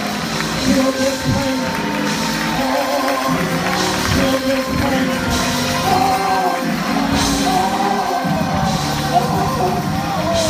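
Gospel praise-break music: a voice singing over a band with a steady beat.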